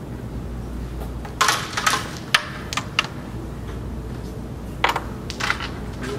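A carrom striker flicked across the board and clacking into the carrom men: a quick burst of sharp clicks as pieces hit one another and the board's frame, then a few scattered single clicks. Two more sharp clicks near the end.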